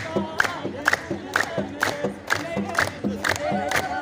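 A crowd singing an Ethiopian Orthodox mezmur together and hand-clapping to a steady beat, just over two claps a second.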